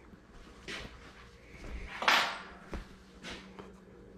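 Handling noises at a workbench: a few brief knocks and rustles. The loudest is a short rushing scrape about two seconds in, followed by a sharp click.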